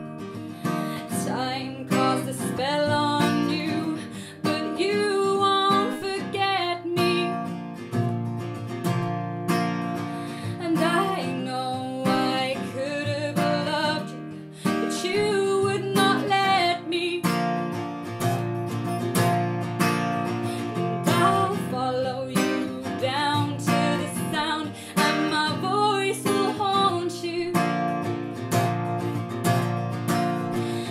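Steel-string acoustic guitar strummed with a capo, with a woman singing over it in bending, held lines.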